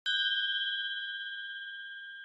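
A single bell ding sound effect, struck once at the start and then ringing on, slowly fading: the notification-bell chime of a subscribe-button animation.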